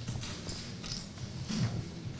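A few irregular light knocks and shuffles of handling noise picked up by the panel's table microphones, over a steady low rumble.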